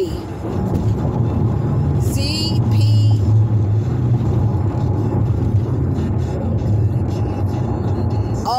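Low, steady rumble of a car heard from inside the cabin, louder around three seconds in.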